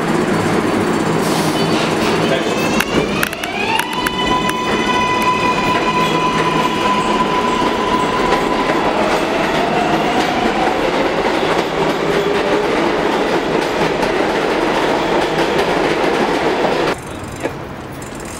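New York City subway train pulling out of a station: its motors give a whine that rises in pitch about three seconds in and then holds steady, over a constant rumble of wheels on rails. A second, fainter rising tone follows as the train gathers speed. Near the end the sound drops off suddenly to quieter street noise.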